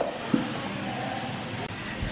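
Clear plastic lid pressed onto a stainless-steel mixer-grinder jar: a sharp click at the start and a lighter knock shortly after, then only a steady faint hiss.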